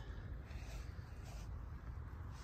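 Low rumble of wind buffeting the microphone, with faint rustling as the handheld camera moves over the wheat.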